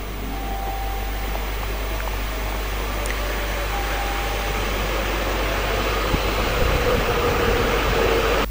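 A Shinkansen bullet train pulling into the station. Its steady rushing noise grows slowly louder as it glides along the platform.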